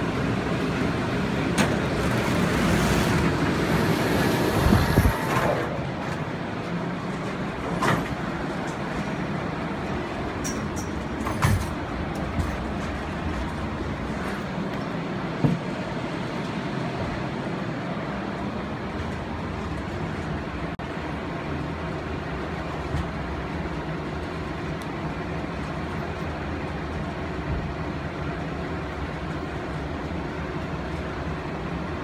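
Airport people-mover tram pulling into the platform: a loud rush for the first five seconds that cuts off sharply as it stops. The car then stands at the platform with a steady low hum, broken by a few short knocks.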